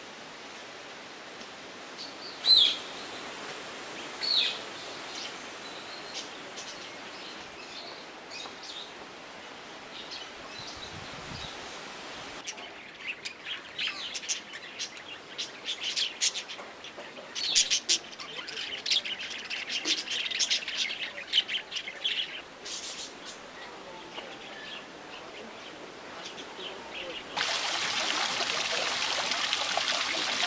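Small parrots in an aviary calling: two loud single calls a few seconds in, then a long run of rapid, busy chirping. Near the end the sound cuts abruptly to steady running water.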